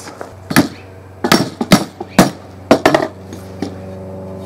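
About seven sharp knocks and clacks over three seconds as a plastic glue bottle, tools and a pine handle are handled and set down on a cloth-covered plywood shield.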